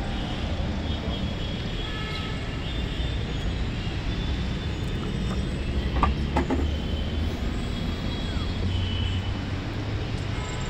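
Steady low rumble outdoors, with two sharp clicks about six seconds in as the Mahindra XUV500's tailgate release is pressed and the latch lets go.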